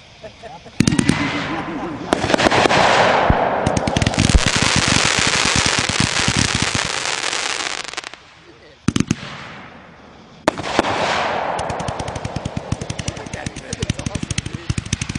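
Consumer firework cake firing: a sharp report about a second in, then several seconds of dense crackling from crackling stars. Another bang comes near nine seconds, and a further shot just after ten seconds is followed by rapid popping crackle.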